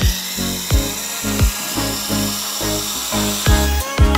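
Espresso machine hissing steadily as hot water runs from its spout into a glass, cutting off near the end, over background music with a steady beat.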